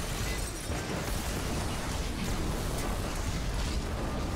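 Movie sound effect of a building exploding in a fireball: a steady, rumbling blast that holds throughout.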